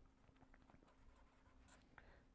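Faint sound of a marker pen writing on paper: a few light, short strokes over a faint steady hum.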